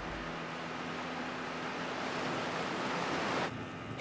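Seawater rushing and foaming, a steady wash that builds slightly and drops away sharply near the end.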